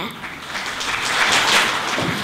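Audience applauding, swelling over the first second and a half.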